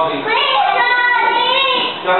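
Young children singing a short phrase in high voices, the notes held and gliding.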